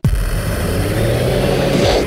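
Intro sound effect of an electronic radio show. The techno beat cuts off and a loud, dense noisy wash begins, with pitch sweeps gliding up and then down and a low steady tone joining about halfway through.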